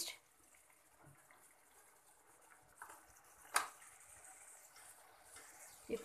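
A single sharp tap of a steel spoon against the cooking pan about three and a half seconds in, with a smaller knock shortly before it, over a faint steady hiss.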